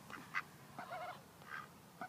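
A duck giving about four short, quiet quacks spread through the two seconds.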